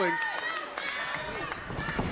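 Arena crowd noise with scattered voices. Near the end come the thuds of a wrestler's running footsteps on the ring canvas as she builds up speed.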